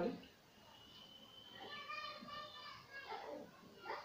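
Marker squeaking on a whiteboard as a word is written: faint, drawn-out high squeaks, one held in the first half and a few more in the middle.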